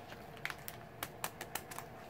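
Faint, scattered small clicks and light handling noise as items are picked up and moved about, about six soft ticks spread over two seconds.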